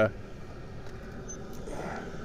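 Induced-draft blower on a wood boiler, salvaged from an old John Wood water heater, running steadily with an even whir and rush of air as it pulls draft through the firebox.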